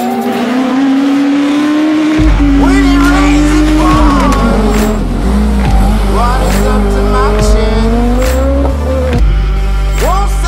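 A Peugeot 106 rally car's engine revving up and down through the bends, with tyres squealing, laid over music with a steady beat. The music's heavy bass is missing at the start and comes back in about two seconds in.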